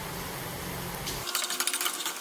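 Broth simmering steadily in a frying pan, then about a second in a rapid run of sharp clicks as a metal spoon knocks and scrapes against the pan while stirring the noodles.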